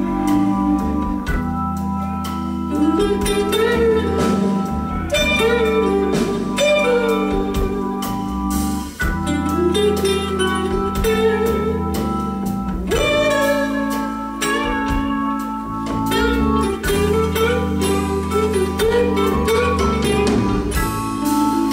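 Live rock band music: long held organ chords, changing twice, under a slow, bending lead guitar melody.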